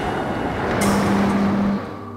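Experimental electronic soundtrack: a dense, rumbling noise texture under a steady low tone that comes in with a hiss about a second in and holds for about a second, part of a loop that repeats just under every two seconds.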